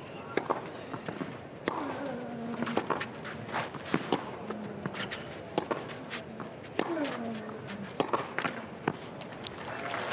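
Tennis rally on a clay court: sharp pops of racket strings striking the ball, roughly once a second, with softer ball bounces between. A player's short falling grunt comes on a couple of shots, over a low crowd murmur.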